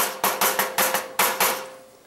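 A hand tool tapping rapidly on the bar of a car's grill shell, metal on metal, about five strikes a second with a steady ringing note from the struck grill. The taps stop a little after halfway and the ringing dies away.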